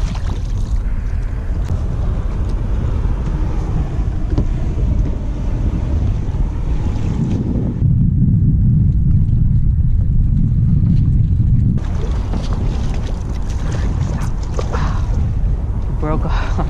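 Wind buffeting the microphone over water slapping against a boat hull. From about eight seconds in to about twelve the sound abruptly turns to a deeper, muffled wind rumble, then the brighter sound returns.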